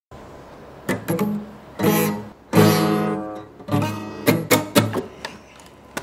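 Guitar chords strummed: a handful of separate strums, each left to ring briefly, with a run of quicker, shorter strokes near the end.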